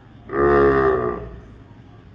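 A man's voice drawing out one long word for about a second, sagging slightly in pitch as it fades.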